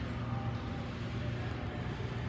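Ice hockey rink ambience during play: a steady low hum under a faint wash of arena noise, with distant voices.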